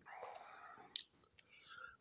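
A man whispering close to the microphone, a breathy hiss with no voiced pitch, broken by a single sharp click about a second in.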